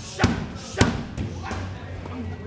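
Strikes landing on leather Thai pads during Muay Thai padwork: three sharp smacks a little over half a second apart, the middle one the loudest and the last the weakest.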